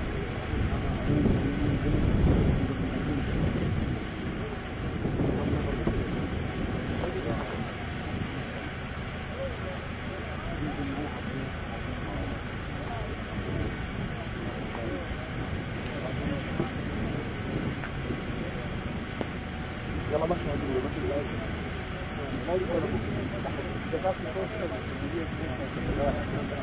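Indistinct talk from a group of people, with wind rumbling on the microphone, heaviest in the first few seconds.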